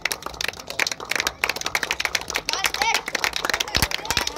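Small outdoor crowd clapping: many irregular, overlapping hand claps, with a voice faintly heard near the end.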